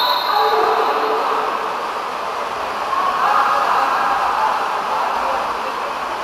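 Steady echoing din of water polo players swimming and splashing in an indoor pool hall, with no single sound standing out.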